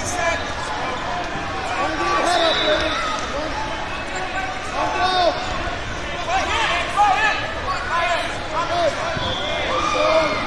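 Wrestling shoes squeaking on the mat in many short, rapid chirps as the wrestlers scramble, over the hubbub of voices in a large hall.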